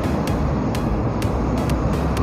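Hard plastic suitcase wheels rolling over brick paving: a steady low rumble with irregular clicks as the wheels cross the joints.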